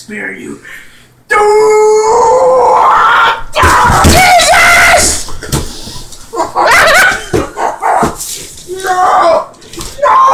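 A man's voice giving loud, wordless drawn-out howls and yells, distorted and close to the microphone, starting about a second in.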